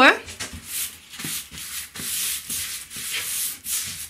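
Clothing rustle: a run of short, scratchy rubbing noises, two or three a second, of fabric brushing close to the microphone as a person moves.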